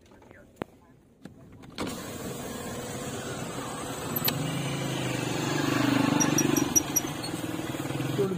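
A Toyota car driving, its engine and road noise heard from inside the cabin. The sound comes in about two seconds in after a near-silent gap and builds to a peak about three-quarters of the way through.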